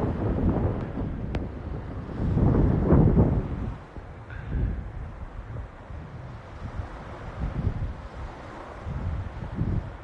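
Wind buffeting a phone's microphone in uneven gusts, a low rumble that swells loudest about three seconds in and then settles to a softer, fluttering rush. A single sharp click comes just over a second in.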